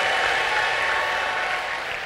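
A large congregation applauding in a big hall: a steady, even clatter of many hands that begins to fade near the end.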